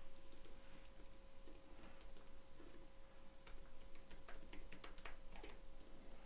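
Typing on a computer keyboard: a run of irregular key clicks, coming faster in the second half.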